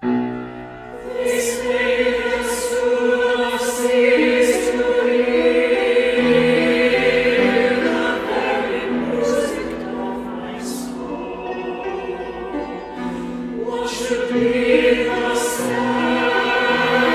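Mixed SATB choir singing loudly in full chords, coming in strongly right at the start after a quieter passage. Sharp hissed 's' consonants, sung together, cut through several times.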